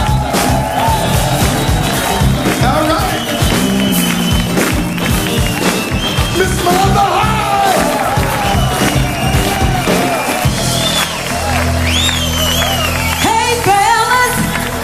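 Live funk band playing an uptempo groove, with crowd cheering. About ten seconds in, the drums stop and the band holds a sustained chord while a woman's voice sings out over it.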